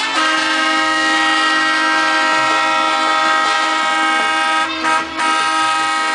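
Semi truck's air horn sounding one long, steady blast of about four and a half seconds, then two short toots near the end.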